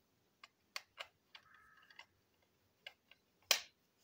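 Small plastic clicks and taps from a battery-powered toy train's parts being handled: about eight irregular clicks, the loudest near the end.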